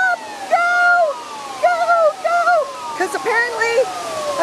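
Flood warning siren sounding a repeated falling wail, a new fall starting about every second, the signal to get clear of the rising river. Shouting voices come in over it.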